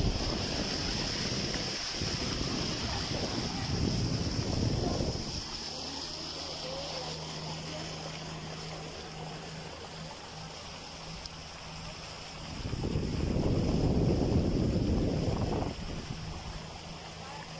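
A motorboat engine runs with a steady low hum as the boat moves across open water, with a steady hiss of water and air throughout. Wind buffets the microphone with rumbling gusts for the first few seconds and again near the end.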